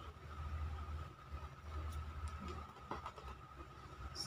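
Quiet room tone: a low rumble under a faint steady high tone, with a couple of faint clicks about one and three seconds in.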